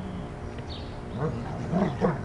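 A dog growling in short calls, each rising then falling in pitch. Several come close together in the second half, during play with a toy.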